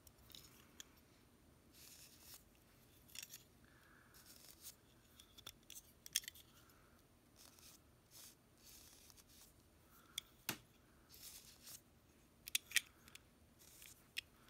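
Faint, scattered clicks and soft rubbing of fingertips pressing around a small midrange speaker's freshly glued foam surround and handling its frame. A few sharper clicks come in the second half.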